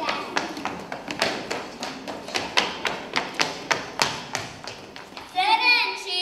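A quick, uneven run of taps and knocks on a wooden stage floor, about three a second, from children's feet stepping and stamping in a dance game. Children start singing again near the end.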